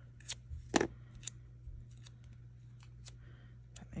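Washi tape pulled off its roll and torn, heard as a few short, crisp rips and clicks, the sharpest just under a second in.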